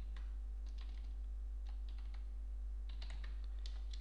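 Computer keyboard keys being pressed in irregular short clicks, over a steady low electrical hum.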